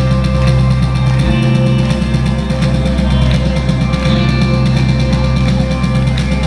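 Rock band playing live through a large PA: loud distorted electric guitars holding sustained chords over a drum kit, with no break.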